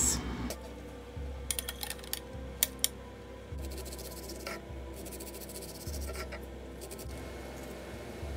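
Knife cutting an onion on a wooden cutting board: a quick run of sharp taps and knocks, with a few more scattered later.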